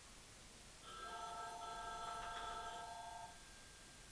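A telephone ringing faintly, an incoming call left unanswered: one steady ring of about two and a half seconds, starting about a second in.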